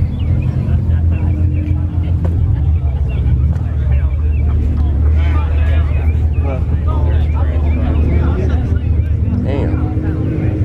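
A car engine idling with a steady, deep rumble, with indistinct voices over it.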